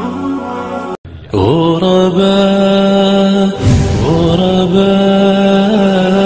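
Chanted vocal music: a voice holding long, steady notes that slide slowly in pitch, cut off briefly about a second in, with a short rushing swell of noise about halfway through.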